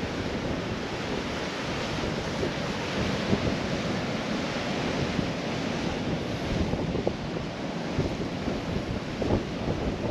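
Ocean surf washing onto a beach, a steady rush, with wind gusting against the microphone.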